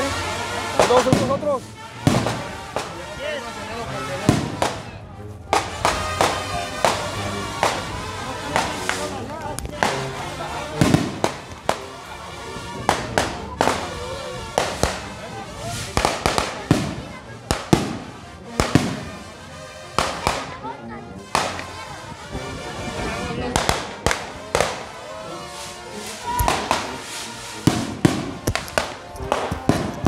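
Cohetes, hand-launched festival skyrockets, going off again and again: repeated sharp bangs at irregular intervals, with music and voices mixed in.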